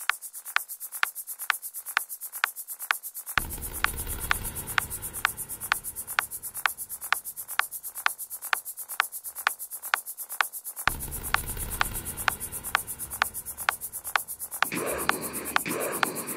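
Opening of an electronic sampler remix: a steady ticking pulse, about two sharp ticks a second with softer ticks between, over a fast, high, hissing tick. A low bass drone comes in about three seconds in and drops out near eleven seconds, and a pulsing mid-range layer joins near the end.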